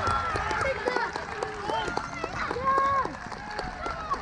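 Several voices shouting and calling out across a football pitch in open air, in short overlapping calls, with a few light clicks.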